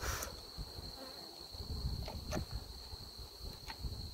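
Honey bees buzzing around an open Langstroth hive, with a few sharp knocks and scrapes as a metal hive tool pries at the wooden frames: one at the very start, one midway and one near the end. A steady high-pitched trill runs underneath.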